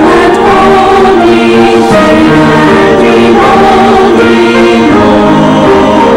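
Mixed church choir of men and women singing in several parts, loud, with held notes that change every second or so.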